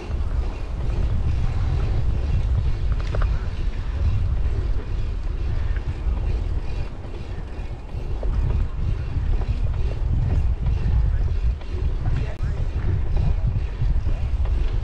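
Wind buffeting the microphone of a bike-mounted GoPro Hero 9 while riding: a low rumble that rises and falls unevenly.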